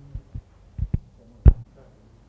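A few dull low thuds, the loudest about one and a half seconds in.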